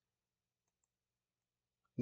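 Near silence: room tone with a couple of faint computer-mouse clicks.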